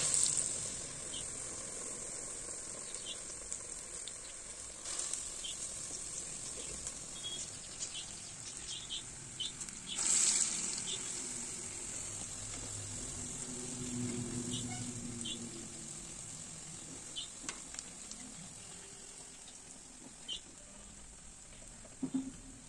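Urad dal vadas deep-frying in hot oil in an iron kadai: a steady sizzle with scattered small pops. It swells loudly at the start as fresh batter goes into the oil, swells again about ten seconds in, and slowly quietens toward the end.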